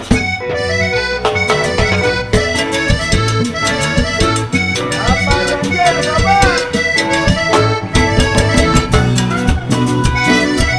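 Live cumbia band playing an instrumental passage with a steady dance beat: electric bass, guitar and congas under a lead melody.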